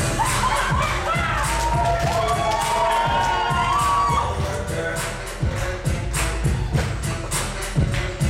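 Upbeat dance music with a steady beat, and an audience clapping, with cheers and whoops over the music in the first half.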